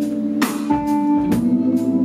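Live band playing an instrumental passage of a soul-pop song: sustained chords with guitar, and drum and cymbal hits marking the beat.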